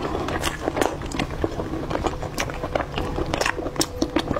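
Close-up chewing and biting of braised pork, with many irregular wet mouth clicks and smacks.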